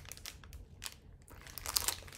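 Clear plastic bag crinkling as it is handled, a run of irregular short crackles.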